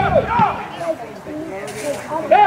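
Shouted calls from men's voices, short and high-pitched, loudest at the start and again about half a second in, with fainter calls after.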